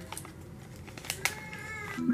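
A few light clicks and crinkles as a small perfume sample's packaging is torn open by hand.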